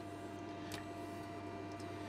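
Low, steady electrical hum from powered bench test equipment, with a faint click about three-quarters of a second in.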